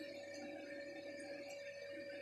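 Quiet room tone with a faint steady hum, one unchanging tone.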